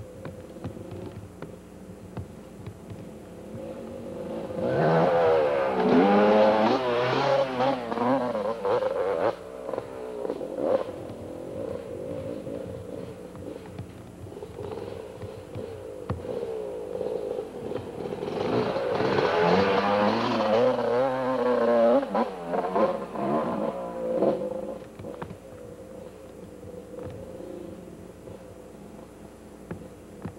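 Yamaha YZ250 two-stroke dirt bike engine revving up and down, its pitch climbing and dropping as the throttle is worked. It comes in two loud bouts, one starting about four seconds in and one about eighteen seconds in, each lasting five or six seconds, and drops back to a lower drone between them.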